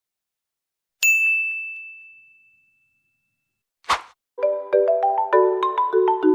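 An edited-in ding sound effect about a second in: one bright, bell-like tone that rings and fades over about a second and a half. A brief swish follows just before four seconds, and then upbeat marimba-style outro music starts, a quick run of mallet notes.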